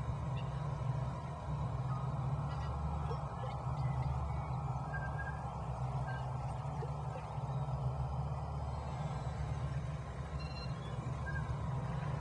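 Steady low ambient drone with a soft hiss above it and a few faint, brief high tones, the background soundtrack of an animation.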